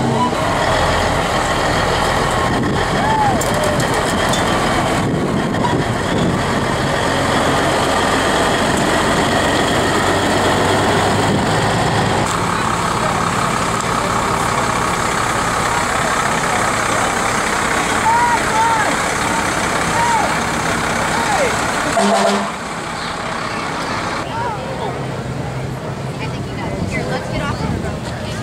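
Fire engine's diesel engine running as it drives slowly past, over crowd chatter. The engine noise drops off sharply about 22 seconds in, as the truck moves away.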